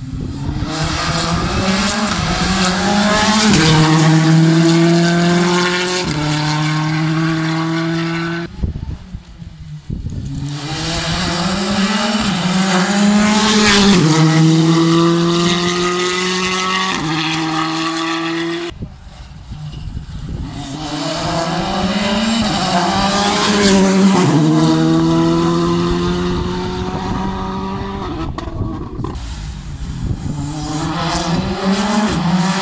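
Rally car engine heard as it approaches along the stage, revving up through the gears in repeated runs. The sound drops away sharply about eight and nineteen seconds in, as the throttle is lifted for corners, then builds again.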